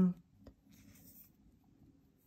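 A drawn-out spoken "um" trails off. Then near silence, with one faint click and a little soft rubbing as a Lamy Safari fountain pen is turned in the fingers.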